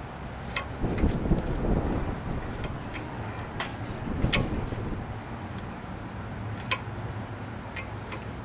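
C-clamp being screwed in by hand against an old brake pad, forcing the brake caliper piston back into its bore so the caliper will fit over new, thicker front pads. The turning gives a low rubbing rumble with about five sharp clicks spread irregularly.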